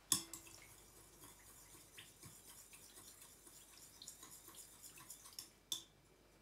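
Small kitchen items handled on a table: a knock at the start that rings briefly, then a scatter of light clicks and ticks, two of them louder near the end.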